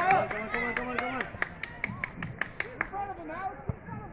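Faint voices calling out across a soccer field, with a rapid run of sharp clicks or taps that stops about three seconds in.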